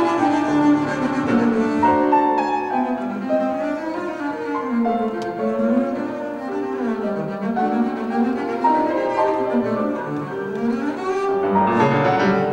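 Bowed double bass and grand piano playing a classical duo passage. The bass moves in quick runs of notes that rise and fall, over the piano's accompaniment.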